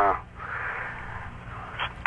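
A pause in a caller's speech heard over a telephone line on an AM radio broadcast: steady low hum and line hiss, after the falling tail of a spoken word at the start.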